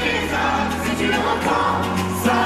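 Live pop song: the band playing under held, harmonised singing voices over a sustained bass note.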